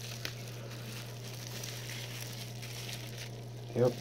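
Faint crinkling of a plastic bubble-wrap bag being handled, with a small tick about a quarter second in, over a steady low hum and hiss.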